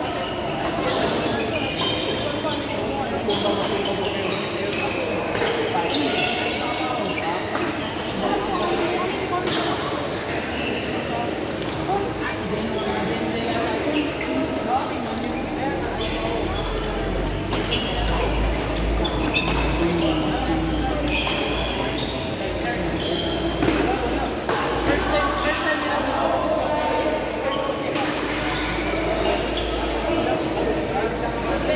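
Sharp, irregular smacks of badminton rackets hitting shuttlecocks, echoing in a large sports hall, over a steady background of players' chatter.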